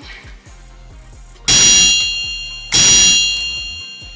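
Two loud ringing, bell-like metallic hits about a second and a quarter apart, each starting sharply and fading over about a second.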